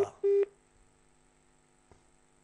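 A short electronic beep on a telephone line, one steady pitch lasting about a quarter second, followed by quiet line hum with a faint click near the end.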